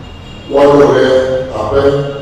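A man's voice speaking in Ewe, one phrase beginning about half a second in.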